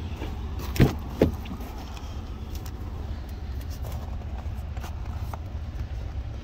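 A Ford F-150 crew cab's rear door is unlatched and swung open, giving two sharp clunks about a second in. A steady low rumble runs underneath.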